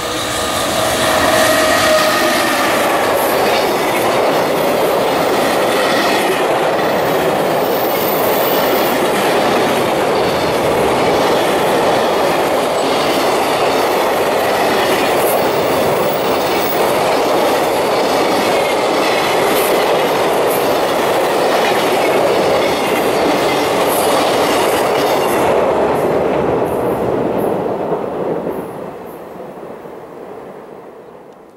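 A long JR Freight container train hauled by an EF210 electric locomotive passes at speed: a loud, steady rumble of wheels on rail with clicks over the rail joints, fading away over the last few seconds as the end of the train goes by.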